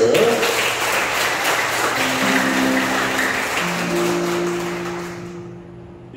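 Audience applauding, dying away over about five seconds, while a guitar plays a few held notes from about two seconds in.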